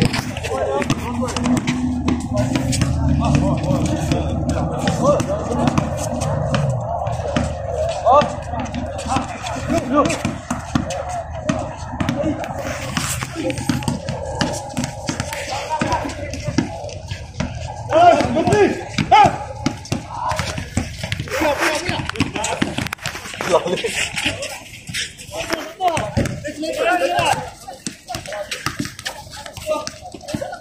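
Players' voices calling out and chattering during an outdoor basketball game, with scattered short knocks from the play on the court.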